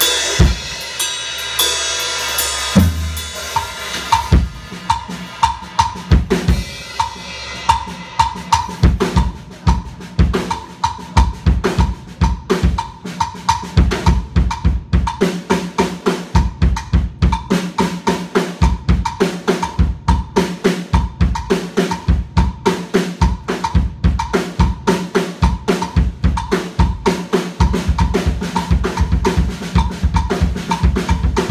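Drum solo on a PDP acoustic drum kit. After a bright, ringing opening, it settles into a fast, even run of bass drum and snare strokes, several a second, with cymbals, kept up to the end.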